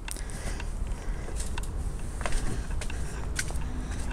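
Low rumble of handling and movement on a handheld microphone, with a few light clicks and taps scattered through it, as a person steps out of a camper van.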